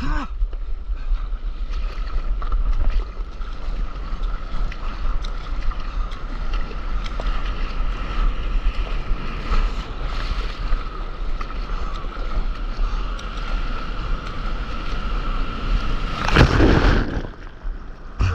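Ocean surf rushing around a paddleboard while wind buffets the board-mounted camera's microphone in a steady low rumble, with a faint steady whistle throughout. A loud splash comes near the end as breaking whitewater washes over the camera.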